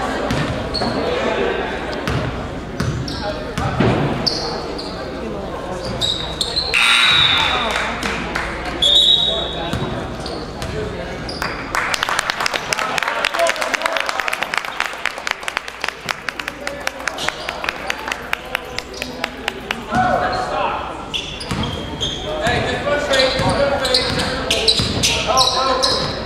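Gymnasium sound of a high school basketball game: voices of players and spectators echoing in the hall, and a basketball bouncing on the hardwood floor. Two short high squeaks come about a third of the way in, and in the middle there is a long run of quick, regular taps.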